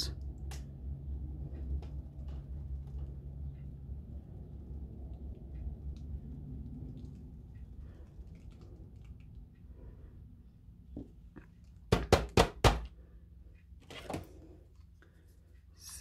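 Quiet low rumble of handling, then about twelve seconds in a quick run of hard thunks and another knock about two seconds later, as the canvas on its wooden stretcher frame is set down on the work table.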